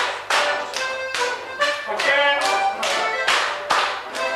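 A morris dance tune with sharp, evenly spaced strikes about two and a half a second, keeping time with the music.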